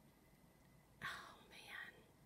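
A brief whispered two-syllable utterance about a second in, over faint room hiss.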